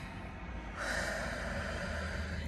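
A woman's slow, deep breath, ending in a long breath out through the mouth that starts under a second in and lasts about a second.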